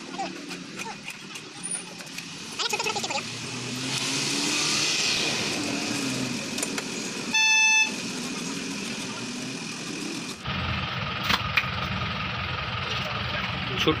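Busy market background with traffic noise and distant voices. A vehicle horn honks once, loud and brief, for about half a second, a little past the middle.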